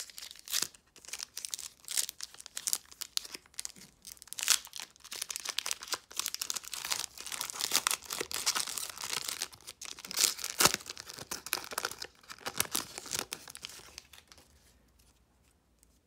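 A trading card pack's foil wrapper being torn open by hand and crinkled: a dense run of crackling, tearing rustles, busiest in the middle and dying away near the end.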